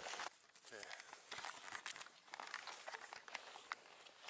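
Handling noise from a camera being moved about: irregular small clicks and crinkling rustles. A faint short falling voice sound, like a groan, comes under a second in.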